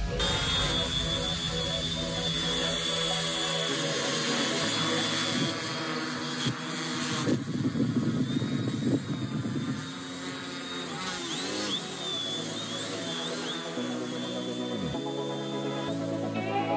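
Quadcopter's A2212 1000kv brushless motors and 10-inch propellers buzzing steadily in flight, the pitch wavering several times near the end.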